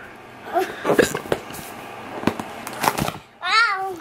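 A toddler's voice: short vocal sounds early on and one clear high-pitched call near the end, with a few sharp clicks in between.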